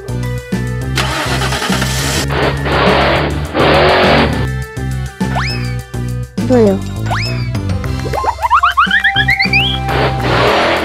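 Upbeat background music with cartoon sound effects. Two long bursts of rushing noise come in the first few seconds, then springy rising 'boing' glides, and near the end a quick run of rising chirps.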